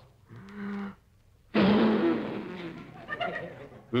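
A man blowing hard at cake candles in a comic effort: a short voiced grunt, then a second and a half in, a long forceful blow of breath that fades away slowly.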